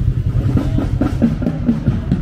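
High school marching band playing: heavy bass drum and drums under brass with sousaphones and trumpets.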